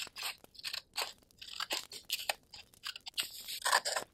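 Pieces of patterned paper being handled and shuffled, giving a run of irregular crinkling, rustling crunches that come thicker and louder near the end.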